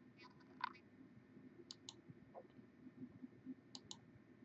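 Computer mouse button clicking, faint: a few soft clicks in the first second, then two quick pairs of clicks, one a little before halfway and one near the end.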